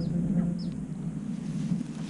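Wind rumbling on the microphone, with short, high, falling bird chirps a couple of times.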